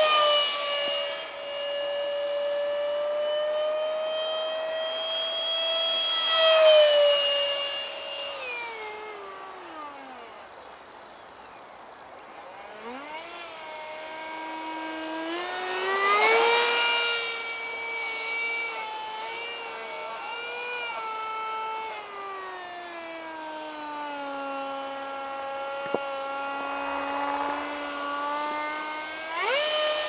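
70 mm electric ducted fan of a foam-board RC jet whining in flight, its pitch rising and falling with the throttle. It swells loudly with a rushing sound as the jet makes close passes, near the start, around six seconds, mid-way and near the end, and drops low for a few seconds when throttled back before climbing again.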